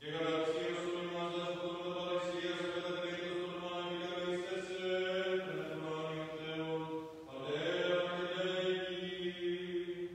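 A single man chanting Byzantine liturgical chant in long held notes that slide slowly between pitches. The chant begins abruptly, and about seven seconds in it briefly drops, then glides back up into a new held note.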